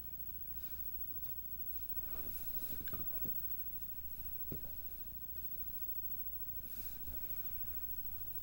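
Quiet room with a steady low hum and faint, soft rustling of handling on a fabric blanket, with a light tap about halfway through.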